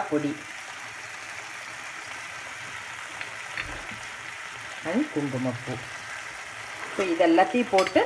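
Grated carrot, milk and kova cooking down in an aluminium pan over a medium gas flame, sizzling steadily, with a steel spoon stirring now and then.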